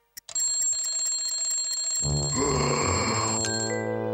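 A single watch tick, then a wristwatch alarm sound effect goes off with a rapid, high, bell-like ring. Music joins about halfway through, and the ringing stops just before the end.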